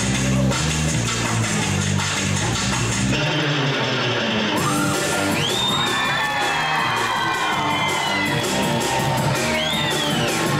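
Live pop band playing a song intro with a heavy bass beat that drops away about three seconds in. From about five seconds on, audience screams and whoops rise over the music.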